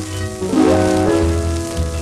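An old shellac 78 rpm record playing a song with guitar and rhythm accompaniment: a melody in held notes over pulsing bass notes, with the record's surface crackle and hiss throughout.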